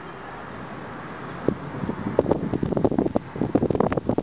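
Steady road and engine noise inside the cabin of a 2007 Toyota Sequoia SUV being driven slowly. From about a second and a half in, dense irregular rustling and clicking comes from the handheld camera being moved around.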